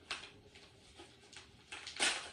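Paper mailer envelope being torn open by hand: faint rustling with short tearing strokes, getting louder near the end.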